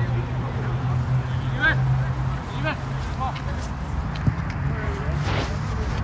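Faint, scattered voices of players calling out across an outdoor soccer pitch, over a steady low hum and background rumble. The hum is strongest in the first couple of seconds.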